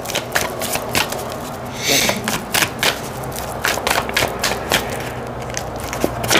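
A deck of tarot cards being shuffled by hand, overhand style: a steady run of irregular soft card taps and flicks. There is a brief hiss about two seconds in.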